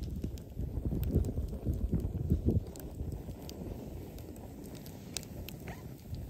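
Wood campfire crackling, with scattered sharp pops from the burning logs, over a low rumble of wind buffeting the microphone that is stronger in the first half.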